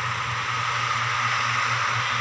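Steady static-like hiss over a low, even hum, with no other event standing out.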